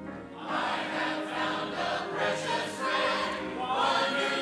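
Church choir starts singing a hymn about half a second in and carries on steadily.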